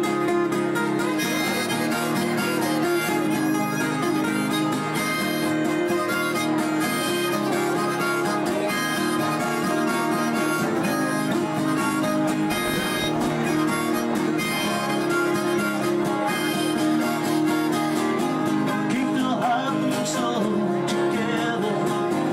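Harmonica solo played from a neck rack over two strummed acoustic guitars, an instrumental break in a live folk-rock song.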